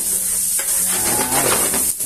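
Chopped onions sizzling in hot oil in a frying pan, with a metal spatula scraping and stirring them against the pan a few times.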